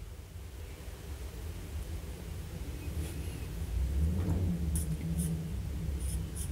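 Low rumble of hands handling a fountain pen, swelling in the second half, with a few faint scratchy ticks near the end as the plastic barrel starts to unscrew from the section on its plastic threads.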